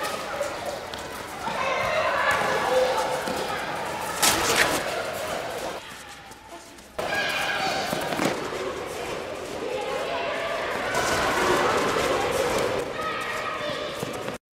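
Children's voices shouting and calling out during a game of football on a hard court, with a sharp thump of the ball being kicked or bouncing about four seconds in.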